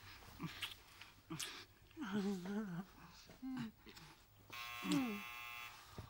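A man and a woman laughing softly and murmuring close together. Near the end a brief steady buzzing tone sounds under a laugh.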